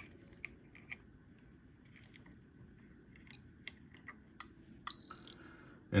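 A few faint clicks from the meter's test clips being handled, then one short, high, steady beep about five seconds in from a Peak Atlas ESR70 ESR meter as it finishes its measurement and shows an in-circuit/leaky reading.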